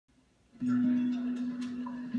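Acoustic guitar music starting about half a second in, with a man's voice saying "ugh" over it.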